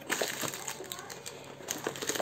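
Plastic packaging and cardboard crinkling and rustling in the hands, with irregular small clicks and taps, as a camera's cable and plastic bag are taken out of their box.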